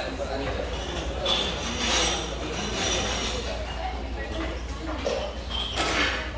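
A person slurping and chewing jjamppong noodles from a bowl: short, hissy slurps come about a second in, at two seconds, near three seconds and again at the end.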